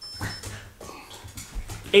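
Soft handling of a padded guitar gig bag being lifted on a hand-held scale, with a brief high electronic beep at the very start.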